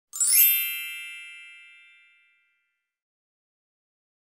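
A bright chime sound effect: a quick upward shimmer that lands on a single ringing ding, fading away over about two seconds.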